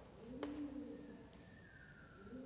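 A pigeon cooing: one low coo, rising then falling, about half a second in, with a sharp tap at its start. A faint higher tone slides down in the second half.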